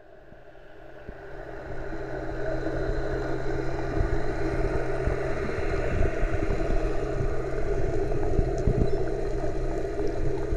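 Boat engine droning steadily, heard underwater; it grows louder over the first few seconds, then holds steady.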